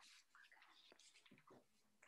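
Near silence: faint room tone with a few soft, brief ticks.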